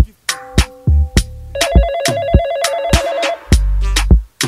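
A telephone ringing in a fast two-tone trill for about two seconds in the middle, over a hip-hop beat with sharp drum hits and deep bass.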